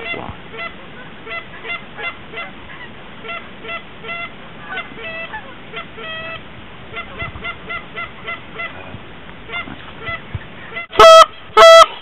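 A flock of geese honking in flight, many short calls overlapping throughout. A little before the end come two much louder, longer honks close to the microphone.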